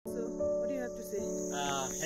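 Insects chirring in a steady, unbroken high-pitched drone, with music-like held tones and a brief voice underneath.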